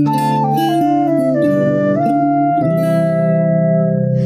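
Flute playing a melody of held notes over a strummed acoustic guitar, starting abruptly.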